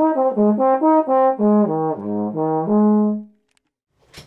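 Trombone played through a clear plastic mouthpiece with a downstream embouchure: a run of short separate notes stepping up and down through the low and middle register, ending on a longer held note that stops a little after three seconds in.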